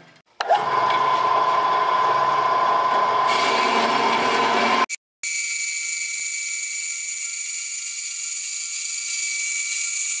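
Horizontal metal-cutting bandsaw running and cutting through a piece of steel truck frame rail. The first half is a steady running sound with a held tone. After a sudden break about halfway through, a steady high-pitched whine from the blade in the steel fills the rest.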